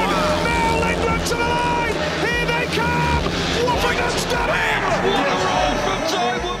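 Speedway race broadcast sound: the bikes' single-cylinder engines running through the last lap, with crowd noise and a commentator talking over them.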